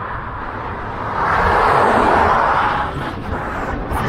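Highway traffic going past: a vehicle's tyre and engine noise rises from about a second in and fades again just before three seconds, over a low rumble.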